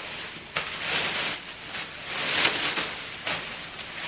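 Thin clear plastic drop sheet crinkling and rustling as it is shaken out and spread by hand, in irregular swells with a few sharp crackles.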